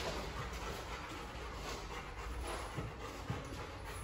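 A Ridgeback-mix dog panting.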